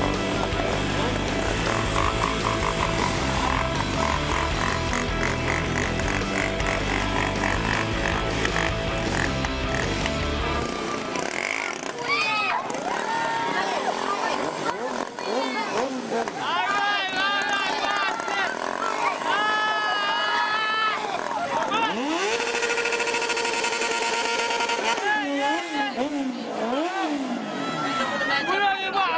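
Small motorcycle engine revved up and down again and again, with some held high notes, as the rider keeps the bike up on its back wheel in a wheelie. A music track with heavy bass runs under it for the first ten seconds or so.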